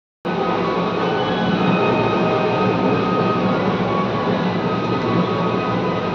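Karaoke backing track playing the song's instrumental opening through a loudspeaker, heard as a dense, steady wash with a few held tones. It starts about a quarter of a second in.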